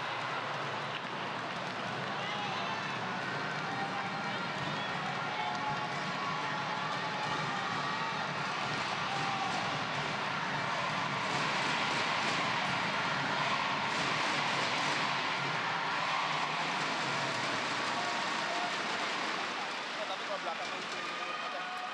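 Indoor arena crowd murmuring and chattering, a steady blend of many voices that grows a little louder about halfway through.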